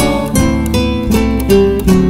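A rondalla ensemble of classical guitars playing an instrumental passage without singing: plucked and strummed notes carrying a melody over lower accompaniment.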